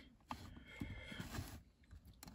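Faint clicks and rubbing of plastic LEGO pieces being handled and pressed onto a model, mostly in the first second and a half.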